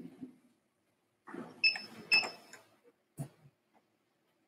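Handling noise near the lectern microphone: a rustle with two short metallic clinks about half a second apart, then a soft knock near the end.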